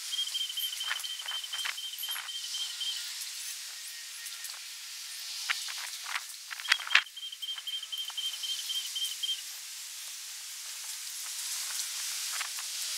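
Outdoor ambience: a steady high hiss with a high, evenly pulsed trill heard twice, each lasting about three seconds, and a few sharp clicks, the loudest about seven seconds in.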